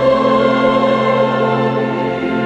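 A choir singing with instrumental accompaniment in long held chords, with a new chord beginning at the start.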